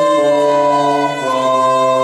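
Renaissance ensemble of recorders, hurdy-gurdy and other early wind instruments playing slow, sustained chords in several parts, the harmony changing about a second in.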